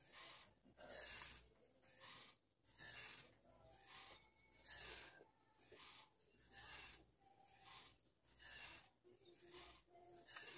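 Faint, steady breathing close to the microphone, in and out about every two seconds.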